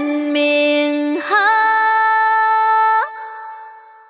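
A woman singing ca cổ, southern Vietnamese traditional song, in long held notes that slide up into the next pitch. After about three seconds the singing stops and the last note fades away.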